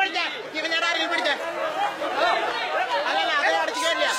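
Several people talking at once in Hindi, overlapping chatter with no other sound standing out.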